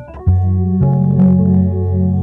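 Electronic keyboard playing sustained chords for a song's hook: a new chord with a low bass note comes in about a quarter second in, and the chord changes near one second.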